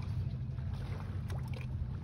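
Steady low hum of a boat's engine idling.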